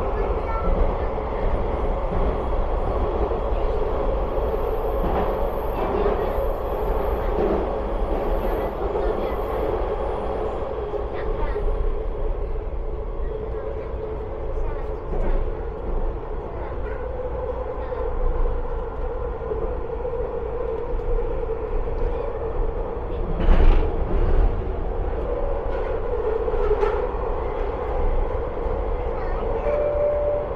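SkyTrain car running steadily along the Expo Line, heard from inside the car: a continuous rumble of wheels and running gear with a humming tone, and one louder clunk about three-quarters of the way through.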